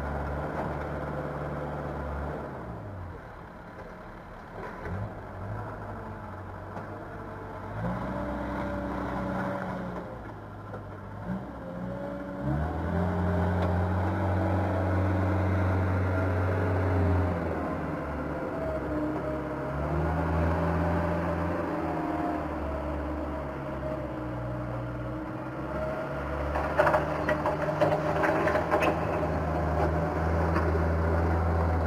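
Backhoe loader's engine running as the machine moves, its revs rising and falling several times, with a quick run of clattering knocks near the end.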